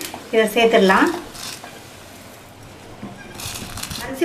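Soaked, drained rice and dal tipped into sambar boiling in a pressure cooker, followed near the end by a ladle stirring and scraping through the pot. A short stretch of a woman's voice comes in the first second.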